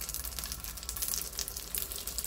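Dumplings sizzling in a thin layer of hot oil in a non-stick frying pan, with a steady crackle as they are laid in one by one.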